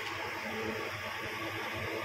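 Steady background room noise: an even hiss with a faint low hum and no distinct events.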